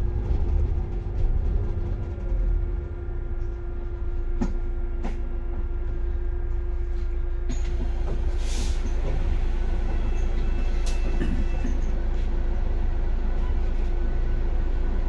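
Cabin rumble of a city bus, with a steady hum, as it pulls in to a stop and stands idling. There are two light knocks about four to five seconds in, and a short hiss of air a little past halfway.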